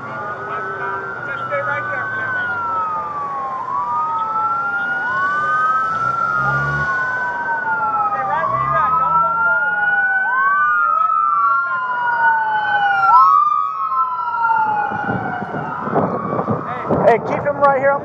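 Emergency vehicle sirens wailing, two overlapping, each rising quickly and then falling slowly about every two and a half seconds. Near the end, a rough rushing of wind on the microphone.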